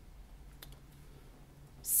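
Quiet pause with a faint low room hum and a single faint click about half a second in; a man's voice starts speaking near the end.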